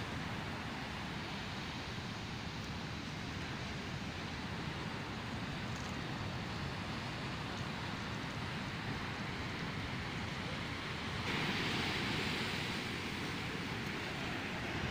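Ocean surf breaking and washing up on a sandy beach as a steady rushing noise, with wind on the microphone; the hiss of the surf gets louder and brighter about eleven seconds in as the water comes closer.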